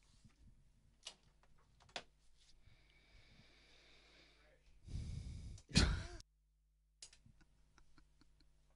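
A person's breathy sigh close to the microphone about five seconds in, after a few faint clicks. The sound then cuts off abruptly to dead silence for about a second.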